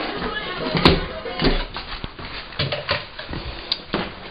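Handling noise from a camera being carried, with irregular rustling and a few sharp clicks and knocks, one about a second in and another near the end, as a radio is about to be plugged into a newly installed GFI outlet.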